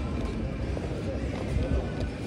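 Indistinct voices of people nearby, none of them clear, over a steady low rumble, with footsteps on stone paving.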